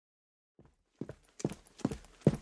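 Footsteps of hard-soled shoes on a hard floor, a sound effect of someone walking in at about two steps a second, starting about half a second in.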